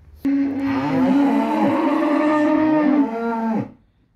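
A cow mooing: one long call of about three seconds, held at a steady pitch, starting a moment in and dropping away near the end.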